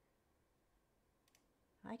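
Near silence with room tone and a couple of faint, brief clicks about a second and a half in; a woman's voice starts just before the end.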